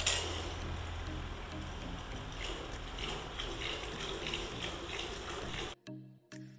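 Milk squirting by hand into a steel bucket in repeated spurts, over a steady low hum and faint background music. Near the end the milking sound cuts off suddenly and only the music remains.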